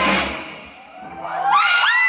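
Live rock band playing loud, then cutting off a fraction of a second in for a break in the song. In the lull that follows, high whoops and shouts from the audience rise and fall, overlapping, in the second half.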